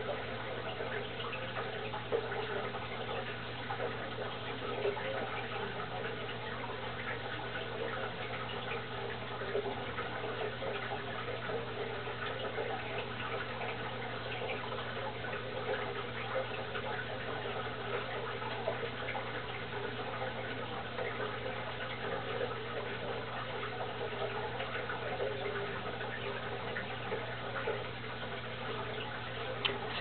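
Steady running, trickling water of an aquarium, as from a tank filter, over a constant low hum.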